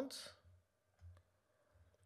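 A faint single click of a computer mouse about a second in, with a fainter tick near the end, in near silence.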